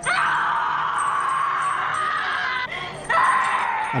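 A woman screaming in a movie soundtrack clip: one long scream, a short break, then a second scream starting about three seconds in.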